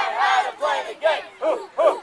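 A group of young boys in a team huddle shouting a chant together in unison, loud rhythmic syllables about two to three a second.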